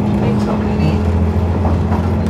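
Steady low rumble and hum of a moving train, heard from inside the passenger carriage.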